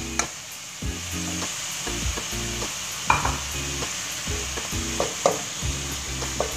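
Wooden spatula stirring and tossing shredded cabbage and vegetables in a metal wok, scraping the pan in a series of strokes over the steady sizzle of frying.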